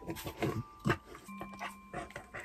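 A Chow Chow dog close to the microphone, breathing and sniffing in a few short puffs, the sharpest about a second in. Faint steady tones sit underneath.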